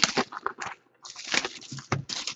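Clear plastic shrink wrap crinkling and tearing as it is stripped from a sealed trading-card box. It comes in short crackly bursts, with a pause of about half a second in the middle and a few sharp clicks near the end.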